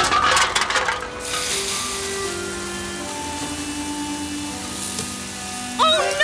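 Cartoon sound effect of metal soda cans clattering and clinking as they tumble out of a crate, followed by a steady fizzing hiss of spraying soda, over background music.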